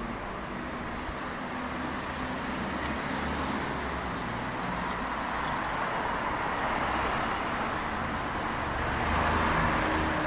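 Street traffic: a steady noise of passing cars, swelling as a vehicle passes close near the end.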